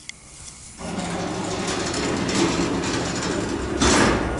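Passenger lift's automatic sliding doors closing. About a second in, the door drive starts with a steady mechanical noise and a low hum, and it ends near the end in a loud bang as the doors shut.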